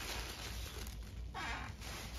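Tissue paper rustling as it is pulled out of a box, with one louder crinkle about a second and a half in.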